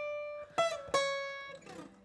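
Acoustic guitar, single notes plucked and left to ring: one note is still sounding at the start, then two more are plucked in quick succession about halfway through and slowly fade away.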